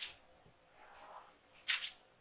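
Silicone brush swiping a wet acrylic flow coat across a canvas: a short, sharp swish right at the start and a quick double swish near the end, with softer strokes between.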